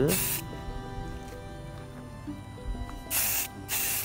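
Aerosol spray-paint can sprayed in short, light passes: a brief hiss at the start, then two more quick hisses close together near the end.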